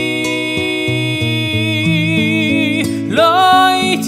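A man singing a long held note over plucked acoustic guitar, then starting a new phrase about three seconds in.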